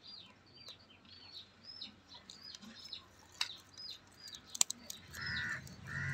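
Birds calling: a steady run of short high chirps, about three a second, with two sharp clicks in the middle and a lower call near the end.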